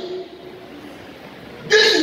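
A man preaching: his voice stops just after the start, there is a pause of about a second and a half with only faint room tone, and his voice starts again near the end.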